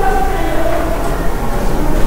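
Steady low hum and rumble with a few faint steady tones above it, no distinct events.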